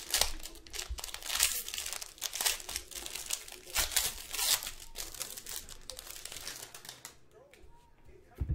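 Foil wrapper of a Panini Spectra basketball card pack being torn open and crinkled by hand, a dense irregular crackle that is strongest over the first five seconds and then thins out as the cards come free.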